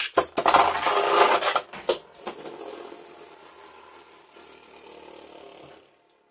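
A Beyblade Burst spinning top launched into a plastic stadium. A loud rush of noise lasts about a second and a half, then comes a click. After that the top spins on the stadium floor with a steady, fainter scraping hum that fades out near the end.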